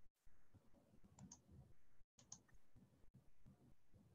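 Near silence with two faint pairs of short clicks from a computer mouse, about a second in and again just after two seconds.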